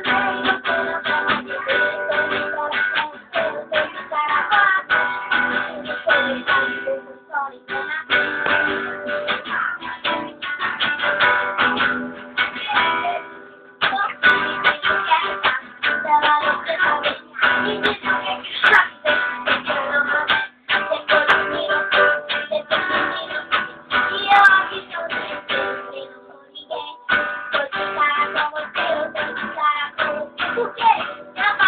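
An acoustic guitar strummed steadily in chords, with a girl singing along to it. The strumming breaks off briefly three times, about seven, thirteen and twenty-six seconds in.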